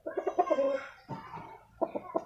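Bangkok gamecock rooster clucking: a quick run of short clucks, then a longer drawn-out note and a few more single clucks.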